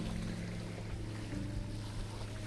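Soft background music with sustained low notes, shifting to a new note partway through, over a steady wash of wind and waves on the shore.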